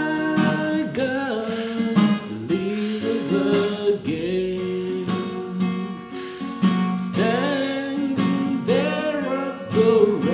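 A man singing a gospel hymn, accompanying himself on a strummed steel-string acoustic guitar.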